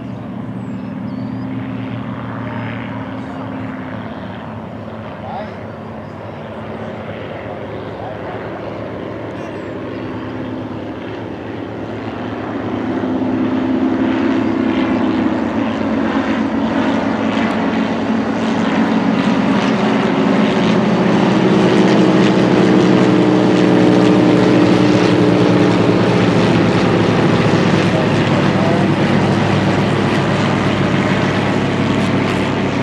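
A formation of light propeller planes, biplanes among them, flying over with the steady drone of several piston engines. The drone swells about halfway through as the formation comes overhead, and stays loud to the end.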